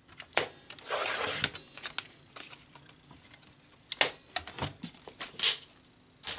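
A paper trimmer's blade sliding through cardstock in one quick stroke about a second in, then clicks and rustles of cardstock and photos being handled and laid down, with a loud short swipe of paper near the end.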